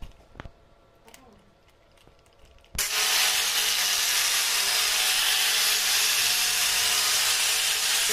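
A few light clicks as a red wheel is fitted onto an angle grinder, then about three seconds in the grinder starts suddenly and runs loud and steady, its wheel pressed against a stainless steel handrail tube.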